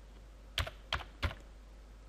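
Computer keyboard keys struck three times, about a third of a second apart, while typing a word.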